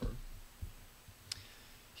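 Quiet room tone with a soft low thud at the start and one faint, sharp click a little past the middle.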